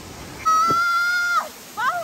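A woman's high-pitched, drawn-out vocal cry: one long held note about a quarter of the way in that drops away, then a second note sweeping up and holding near the end.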